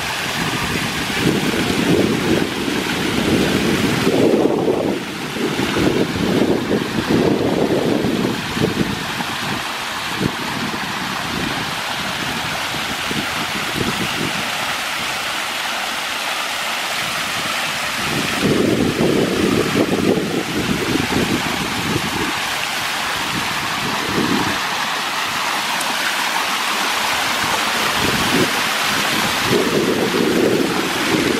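Water cascading off a stone wall and down wide stone steps of an outdoor stepped fountain, a steady rushing splash. Wind buffets the microphone in gusts through the first several seconds, again a little past midway and near the end.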